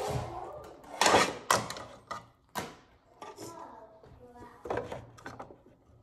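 Plastic fingerboard ramp pieces knocked and clattered against a wooden table as they are picked up and moved, a handful of sharp knocks, the loudest about a second in.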